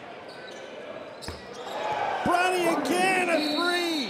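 Live court sound of a basketball game in a gym: a single sharp knock about a second in, then louder crowd noise with drawn-out pitched shouts from about two seconds on.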